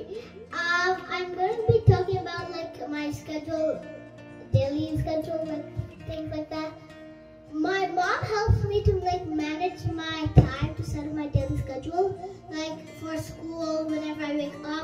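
A child singing a melody with musical accompaniment.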